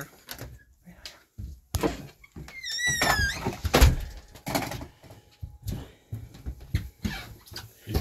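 A door being handled: a few scattered knocks, a short squeaky creak about three seconds in, then a loud thunk just before the four-second mark.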